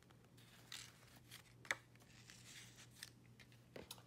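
Faint rustles and light taps of paper and cardstock as the pages and photo flaps of a scrapbook mini album are handled and turned, with one sharper tap about halfway through.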